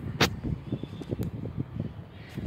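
Handling noise of a phone being moved by hand: a sharp click about a quarter second in, then a run of short low knocks and rustles.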